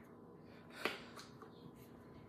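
A plastic mustard squeeze bottle being handled, with a few faint clicks and one sharper click a little under a second in.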